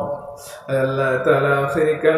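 A man's voice chanting sermon words in a drawn-out, sung tone into a microphone, breaking off for a breath about half a second in, then holding long notes again.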